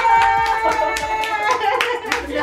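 Quick run of hand claps by one person, about six claps a second, celebrating a guessed song, over a steady held high note.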